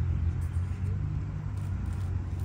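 Steady low rumble of a running vehicle engine or road traffic.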